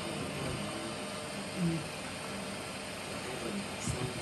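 Quiet room tone: a steady low background hum with a few faint, brief voice-like sounds, and a soft knock near the end.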